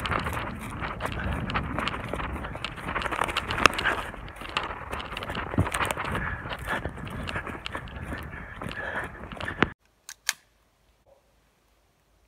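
Footsteps crunching and rustling through a moss-and-lichen forest floor as a person moves quickly, mixed with clothing rustle and handling knocks on a handheld camera, a dense run of small clicks and crackles. It cuts off abruptly about ten seconds in, leaving near silence with one brief click.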